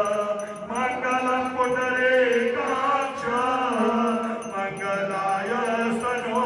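Devotional aarti hymn sung as a chant, with long held notes that slide up and down in pitch over musical accompaniment.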